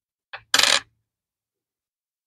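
Copper pennies clinking together in a short, brief rattle about half a second in, just after a faint first tap.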